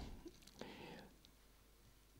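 Near silence: room tone, with a faint breathy voice sound about half a second in.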